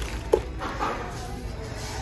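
Handling noise from a heavy hand-carved wooden wall shelf being moved about, with one short sharp knock about a third of a second in and a little scuffing after it. A low steady store rumble runs underneath.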